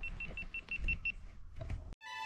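A quick run of about eight short, high-pitched electronic beeps, around seven a second, stopping about a second in, over a low wind rumble on the microphone.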